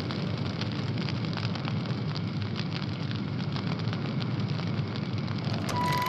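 Large fire burning, a steady rushing noise with dense crackling. Music with a held tone comes in just before the end.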